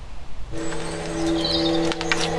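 A steady hum made of several sustained tones sets in about half a second in, with a single short bird chirp about a second and a half in.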